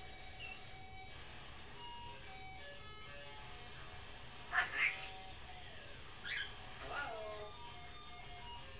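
Pet parrot calls three times: a loud call about halfway through, then two more near the end, the last sliding down in pitch. Faint sustained electric guitar notes, played through effects pedals in another room, run underneath.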